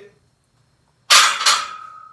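Loaded barbell racked into the steel J-hooks of a power rack: two loud metal clanks about a second in, close together, followed by a lingering metallic ring.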